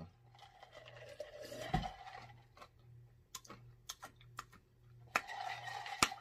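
Faint sipping and swallowing of a drink from a glass jar, with a deeper gulp about two seconds in and a few soft clicks.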